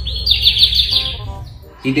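Bird chirping: a quick run of high chirps, about ten a second, lasting about a second and then fading.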